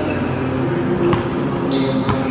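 A basketball bounces once on a gym's hard court floor about a second in. A short high sneaker squeak follows near the end.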